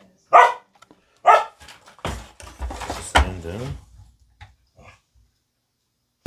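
A dog barking twice, about a second apart, near the start.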